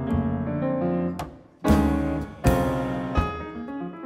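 Jazz played on a grand piano with double bass and drums, piano notes leading. The music drops away briefly about a second and a half in, then two sudden loud accents hit in quick succession.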